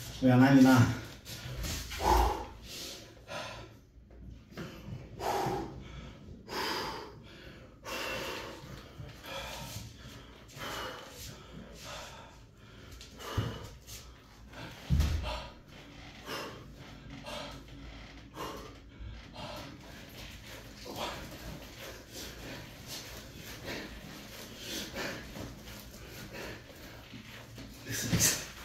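A man breathing hard and snorting, winded from a long set of weighted pull-ups and burpees, with a dull thump about fifteen seconds in.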